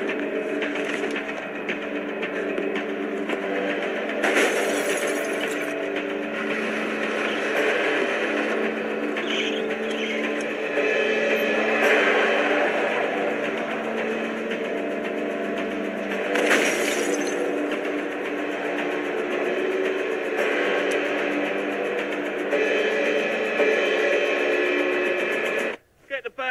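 Tense film score of long sustained tones. Two sharp noisy hits rise out of it, about four seconds and about sixteen seconds in.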